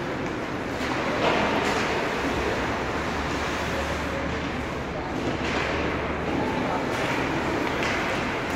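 Indoor ice-rink ambience during a hockey game: a steady hiss of skating and arena noise over a low hum, with faint distant voices and a few sharp knocks of sticks or puck.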